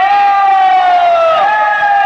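Music played loud through a wedding DJ loudspeaker stack: one long high held note that slides slowly down, then steps back up about one and a half seconds in.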